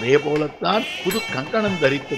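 A man's voice in drawn-out, wavering tones that glide up and down, like chanting, running on without a break.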